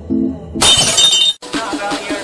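A loud glass-shattering crash sound effect about half a second in, lasting under a second and cutting off suddenly. It breaks off a short stretch of music, and a different music track with a steady beat follows straight after.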